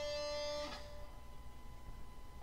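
Electric guitar note ringing out and fading, damped about two-thirds of a second in and leaving a faint lingering tone.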